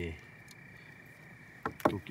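A faint steady high-pitched drone, then two or three sharp knocks close together near the end.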